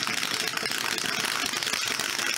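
Two dice rattling inside a clear plastic dice dome shaken by hand: a rapid, continuous clatter of dice against the plastic.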